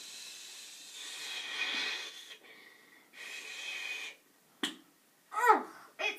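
Breathy hissing made as a rain sound effect, in two stretches with a short gap between. Near the end there is one sharp click, then a brief vocal sound.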